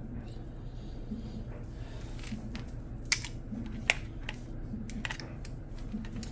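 Scattered small clicks and taps from multimeter test probes being handled and touched to a car battery's terminals, the sharpest about four seconds in, over a steady low hum.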